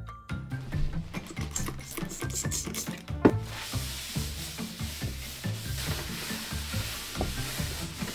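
Background music, and from about three seconds in, after a sharp click, a paper towel wiping a wet wooden desktop with a steady rubbing hiss.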